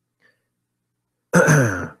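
A person clearing their throat once, briefly, about a second and a half in, with near silence before it.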